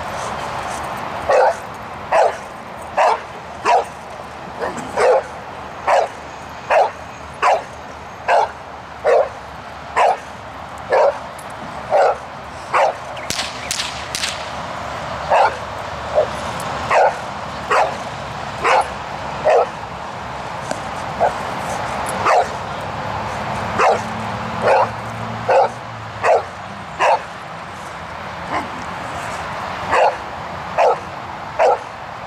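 A large dog barking steadily at a protection-training helper, about one deep bark a second with a short pause about halfway, while straining on its leash in a bark-and-hold exercise.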